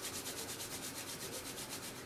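Two palms rubbed together vigorously, skin on skin, in fast, even back-and-forth strokes that stop at the end.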